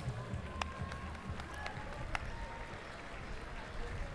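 Stadium crowd ambience from an athletics meeting: a steady murmur of spectators with a few scattered claps, one about half a second in and another about two seconds in.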